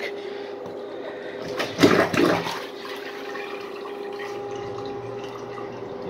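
A miniature model toilet flushing: a steady rush of water swirling through the small bowl, with a faint steady hum under it. A brief louder burst comes about two seconds in.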